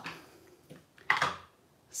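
A single short clack of a plastic stamp ink pad being handled on the work surface about a second in, between mostly quiet handling.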